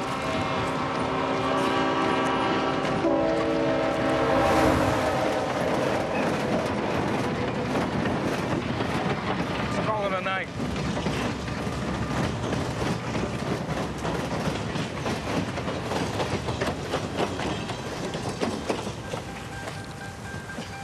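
Locomotive horn sounding a chord for about four and a half seconds, dropping in pitch about three seconds in as the engine passes. It is followed by the steady rumble and clickety-clack of rail cars rolling past on the tracks.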